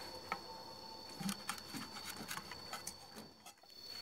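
Faint scattered clicks and light scrapes of a wooden spatula against a nonstick frying pan as a fried egg is worked loose to turn it. A steady high-pitched insect whine carries on behind.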